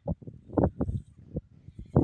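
A stick knocking and scraping in a plastic bucket while fish-and-sand chum is stirred and scooped across: a string of short, uneven knocks and wet squelches.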